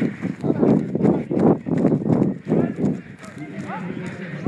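A person running on a dirt path with rhythmic footfalls, about two strides a second, and hard breathing close to the microphone.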